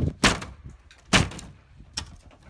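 Two sharp blows on painted wooden wall boards, about a second apart, as the planks are broken through from behind, with a smaller knock near the end.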